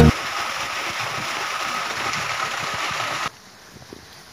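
A steady rushing noise with no bass, like running water, that cuts off suddenly a little past three seconds in, leaving only faint outdoor background.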